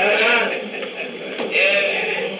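A man's voice preaching in a chanted, sing-song delivery, the pitch of each phrase rising and falling, on an old recording with a thin, narrow sound.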